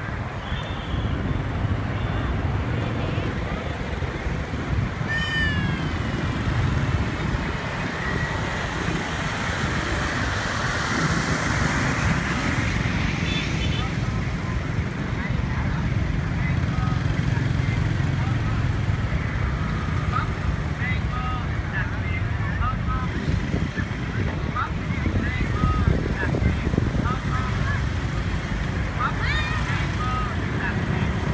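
Dense motorbike and car traffic with a steady engine and road rumble and the voices of a crowd. Short high-pitched calls or squeals break through now and then, a falling one about five seconds in and many brief ones in the last third.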